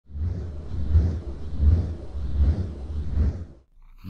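Deep rumbling intro sound effect that swells about every three-quarters of a second, with a hiss above it, and cuts off shortly before the end.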